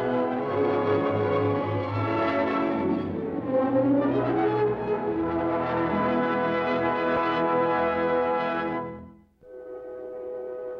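Orchestral film score with brass to the fore, held loud and full, cutting off sharply about nine seconds in. A quieter music cue starts just after.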